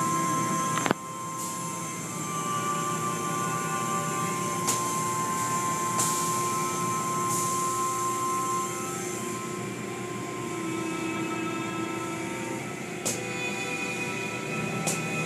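Automatic car wash heard from inside the car: a steady rush of spraying water and washing equipment, with a few sharp slaps against the body. Music of long held notes plays over it.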